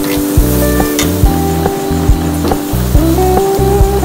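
Large cuts of meat sizzling on a barbecue grill, a steady hiss, under pop music with a regular beat.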